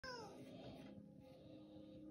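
Faint film soundtrack played through a tablet's small speaker: a brief cry falling in pitch at the very start, then soft sustained music tones.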